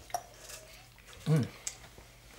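A man's short, appreciative "mmm" as he drinks a shot, set between a couple of small sharp clicks of glass shot glasses.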